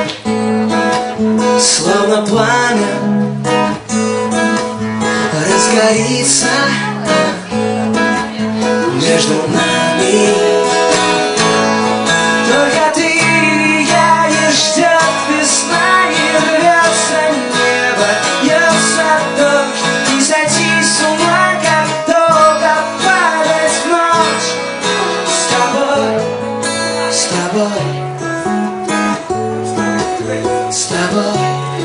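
Live acoustic music: strummed acoustic guitar chords with a moving melody line over them, an instrumental stretch of the song without singing.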